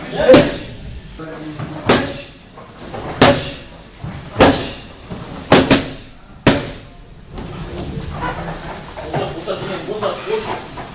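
Boxing gloves striking leather focus mitts, a sharp smack roughly every second or so, with a quick double about five and a half seconds in. The strikes stop after about seven seconds, leaving softer shuffling.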